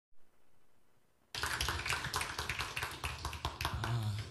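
Near silence for just over a second, then a small audience clapping: a quick, irregular run of separate hand claps.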